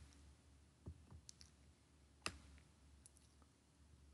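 Near silence broken by a few faint clicks of a computer mouse, the sharpest about two seconds in.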